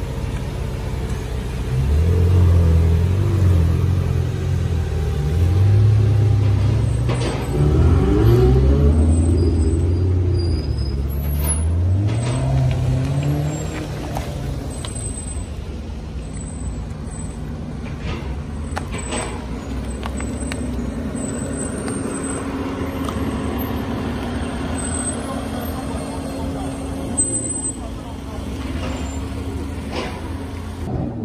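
Engines of several luxury cars driving slowly past at close range in a convoy. Their pitch rises and falls as they pull by through the first half or so, then settles to a steadier low hum.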